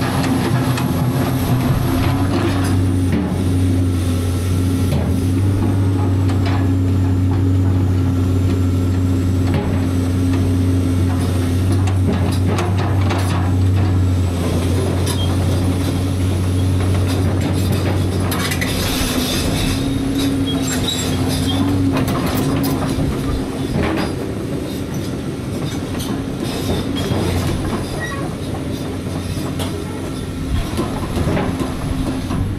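Tracked excavator at work: its diesel engine runs steadily with a faint high hydraulic whine that slowly rises and falls, while its boom swings. Scattered metal clanks and knocks come through mostly in the middle stretch.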